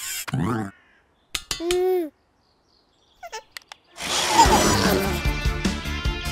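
Short wordless cartoon voice sounds in the first two seconds, a few faint clicks, then background music starting about four seconds in.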